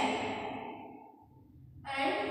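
A woman's voice trailing off into a breathy sigh, then a short quiet pause before she starts speaking again near the end.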